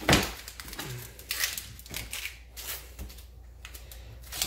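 Dry, papery onion skin crackling and rustling in short bursts as it is peeled off by hand, after a single knock on a plastic cutting board at the start.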